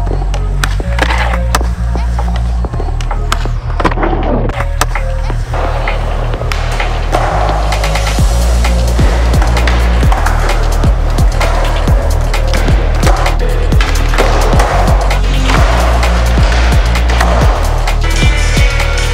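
Skateboard on concrete: the wheels rolling, with sharp clacks of the board popping and landing, over a music track with a steady, heavy bass.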